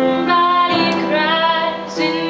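A woman singing a slow ballad with piano accompaniment, holding a long wavering note through the middle.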